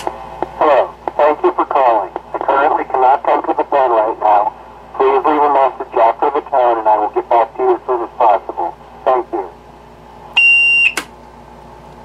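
A 1960s Ansafone KH-85 answering machine running its test cycle: its outgoing-message tape plays back a recorded voice through the machine's small built-in speaker. Near the end comes a short, high, steady beep, cut off by a click as the machine switches over to record.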